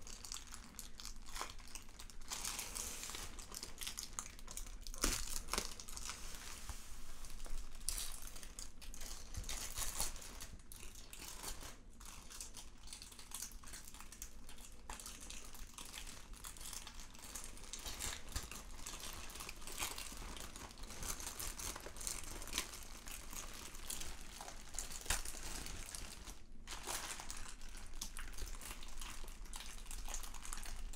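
Thin clear plastic bag crinkling continuously as hands open it and peel it back from a folded shirt, with sharper crackles now and then.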